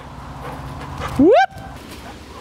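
A Labrador retriever gives one short yelp that rises sharply in pitch, about a second and a quarter in.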